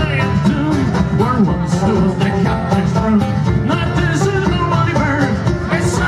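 Live Irish-style folk music: a five-string banjo picked at a brisk pace over a bodhrán frame drum.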